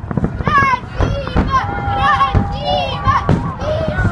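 Children's high-pitched excited shouts and squeals from a crowd watching fireworks, one voice held in a long cry through the middle, with the sharp bangs of firework shells bursting.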